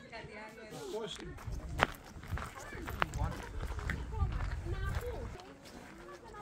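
Indistinct voices of people talking in the background, with scattered footsteps and a couple of sharp clicks about two and three seconds in.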